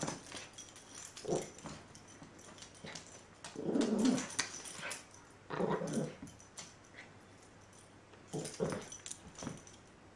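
A small dog making short, low vocal noises in about four bursts while mouthing and shaking a plush toy.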